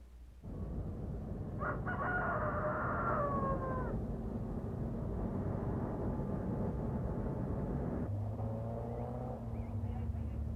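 A rooster crowing once, one long call that drops in pitch at its end, over a steady low rumble. A shorter, lower call follows near the end.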